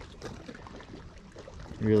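Soft water lapping and trickling against the boat in a lull, then a man's voice starts just before the end.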